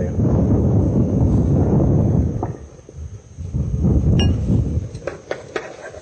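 Cooking noise at a frying pan: green onions tipped into a pan of sautéing onions and stirred with a wooden spoon. A low rustling noise runs for about two seconds, returns briefly around four seconds in, and is joined by several light clinks and knocks of utensils.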